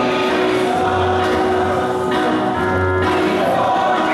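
Many voices singing a gospel hymn together, with instrumental accompaniment and held bass notes, steady and continuous.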